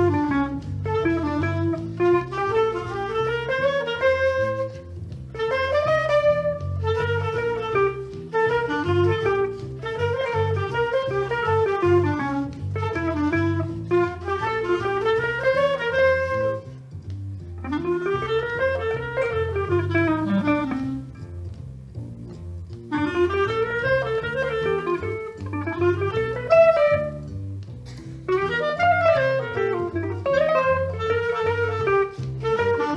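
Small jazz group playing live: a clarinet carries a winding melody in phrases with short breaths between them, over guitar accompaniment.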